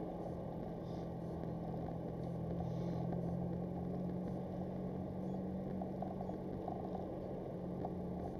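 Car engine and road noise heard from inside the cabin while driving slowly: a steady low hum whose pitch rises slightly a few seconds in, then holds.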